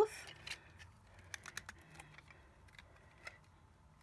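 Faint light clicks and taps of a small plastic skull lantern being picked up and handled, with a quick cluster of clicks about a second and a half in.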